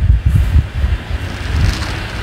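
A ruler being shifted across drawing paper and a pencil scraping along it, over a strong uneven low rumble of hands and ruler knocking against the drawing board and the microphone.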